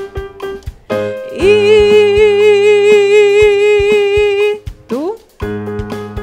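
A woman singing one long sustained note with an even, regular vibrato over keyboard chords and a steady ticking beat. Near the end her voice slides quickly upward into the next note.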